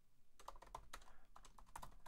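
Faint typing on a computer keyboard: a quick, uneven run of keystrokes as a name is typed in.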